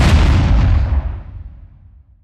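Cinematic boom sound effect for a logo reveal: a deep, loud hit with a hissing top that dies away over about two seconds.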